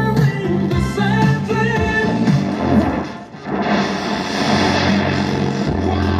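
Grundig 3012 valve radio with EL12 output valve playing a music station with singing through its loudspeaker. About three seconds in the sound dips briefly and comes back hissier as the station changes.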